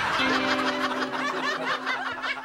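People laughing in a quick run of repeated ha-ha pulses, over light background music holding one steady note.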